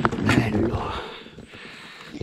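A person's voice speaking briefly in the first second, starting with a sharp click, then fading to quiet.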